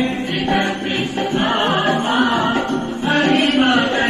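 Music with voices singing a song.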